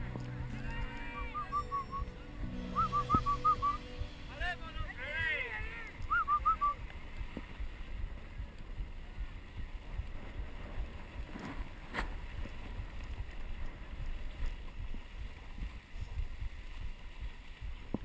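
Dog sled running over snow: a steady low rumble of the runners and the team moving, with wind on the microphone. Short high warbling and gliding calls come in the first several seconds, then stop.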